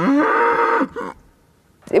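A cow mooing: one long call held at a steady pitch that ends about a second in.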